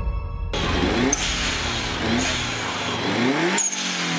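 A car engine accelerating hard, its pitch climbing three times in quick succession as it pulls up through the gears, with tyre and road noise.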